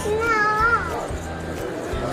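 A toddler's high-pitched, drawn-out vocal sound that rises and then falls, lasting well under a second, shortly after the start, over steady background music.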